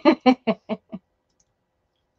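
A woman laughing in short, quick "ha" pulses that fade out about a second in, followed by silence.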